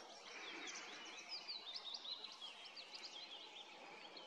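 A small songbird singing a quick, jumbled run of high chirping notes for about three seconds. It is faint, over a steady hiss of forest background.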